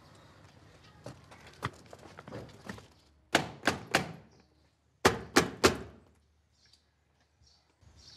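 Metal ring knocker struck against a heavy studded gate door: two rounds of three hard knocks, the second round about a second after the first.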